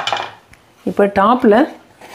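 A single sharp metal clink of a kitchen utensil against cookware at the very start, ringing briefly before it fades.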